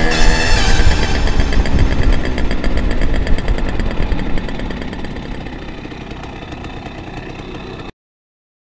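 Simson moped's single-cylinder two-stroke engine running on the move, fading out over the last few seconds and cutting off just before the end. Music stops just as it begins.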